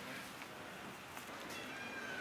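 A faint, brief high-pitched animal call about a second in, over quiet outdoor background noise.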